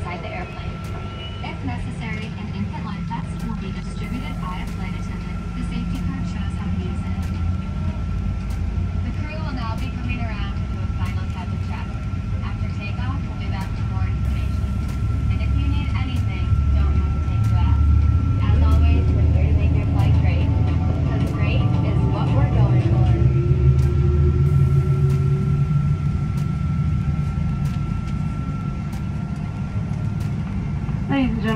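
Airliner cabin noise on the ground: a steady low rumble of the engines and cabin air that grows louder about halfway through, with a thin steady high whine. Passengers talk indistinctly in the background.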